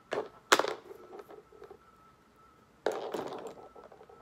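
Makeup items being handled and set down: two sharp knocks in the first half-second, then a short rattling clatter about three seconds in.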